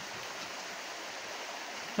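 A steady, even hiss with a faint click at the very start.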